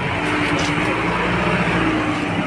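A motor vehicle engine running nearby: a steady low hum over street noise.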